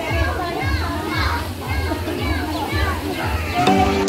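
Children's voices calling and chattering while they play in a swimming pool. Music comes in near the end.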